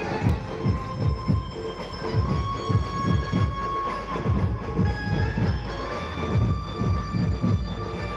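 Loud, distorted DJ sound-system music from a street rally: a heavy bass beat about three hits a second under long held electronic tones.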